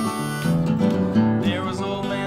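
Acoustic guitar strummed steadily while a neck-rack harmonica plays the last notes of its solo; the harmonica stops about half a second in and the guitar strumming carries on alone.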